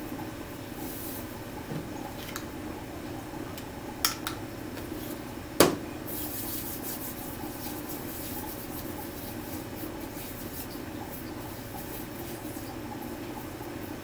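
Hands rubbing together with hand sanitizer, a soft steady rubbing. Two short clicks come about four seconds in, and a single sharp click, the loudest sound, about a second and a half later.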